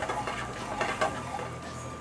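Bourbon sauce being stirred and moved around a hot skillet while it flambés on a gas burner, with scattered scrapes and clinks of utensil and pan over a steady background hum.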